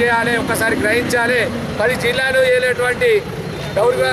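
Speech: a man talking loudly and continuously in Telugu, with street traffic noise underneath.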